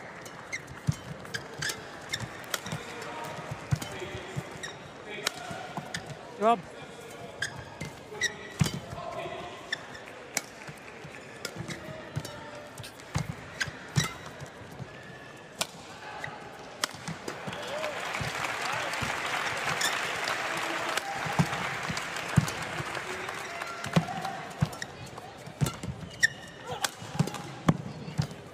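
Badminton rally in an arena: repeated sharp cracks of rackets striking the shuttlecock, with short shoe squeaks on the court over a murmuring crowd. About 17 seconds in, crowd applause swells and fades again by about 23 seconds, then the strikes resume.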